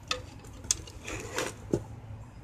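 A few faint, light clicks and small knocks, as of a hand handling objects on a cluttered workbench, over a low background hiss.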